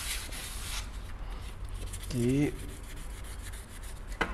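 Sandpaper rubbed by hand over a chrome-plated plastic headlight part: rasping strokes, strongest in the first second and then lighter, scuffing the chrome so paint will adhere. A brief voiced sound about halfway through.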